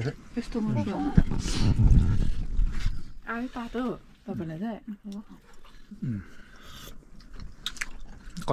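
Voices talking in snatches and a man chewing a mouthful of food close to the microphone, with a low bumping rumble about a second in and a couple of clicks near the end.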